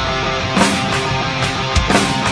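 A live rock band playing an instrumental passage: electric guitar and bass chords held under drums, with a drum hit about half a second in and another near the end.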